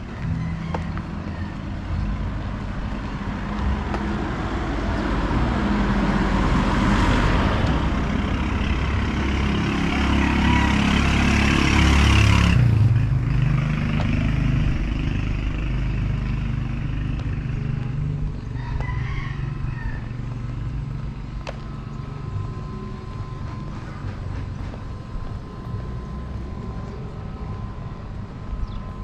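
A motor vehicle passing close by on the street: its engine and tyre noise swells over several seconds to a peak about twelve seconds in, then drops away suddenly, leaving quieter street ambience.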